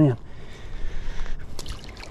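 Light splashing and dripping of water as a hand holds a small trout at the water's surface and lets it go, with a few sharp little splashes about a second and a half in.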